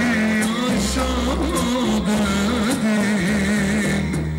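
Loud dance music with a wavering, ornamented lead melody over a steady bass.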